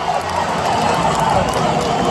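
Large concert crowd cheering and shouting steadily, many voices blending into one continuous din.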